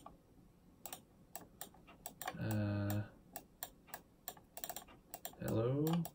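Irregular sharp clicks of a computer's keyboard and mouse being worked, scattered through the stretch. Halfway through a person hums briefly, and a voice sounds near the end.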